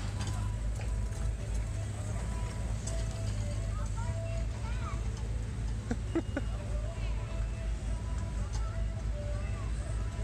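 Steady low rumble with faint distant voices calling now and then, and a couple of brief clicks a little past the middle.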